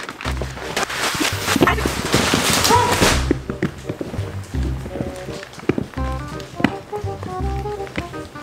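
Background music with a steady bass line. For about the first three seconds, plastic mattress wrapping crackles and rustles as it is pulled off, then cuts off suddenly.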